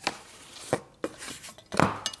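A long ruler and cardboard being handled and set down on a work table: four sharp knocks, the loudest near the end.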